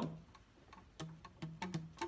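Saxophone keys worked by the fingers without blowing: a string of irregular key clicks, and short low pops as pads close over the tone holes.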